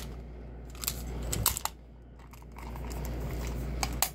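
Clicks and rattles of a clear plastic toy gyrosphere being handled and its action feature worked: a scatter of sharp clicks, clustered about one and a half seconds in, with another just before the end.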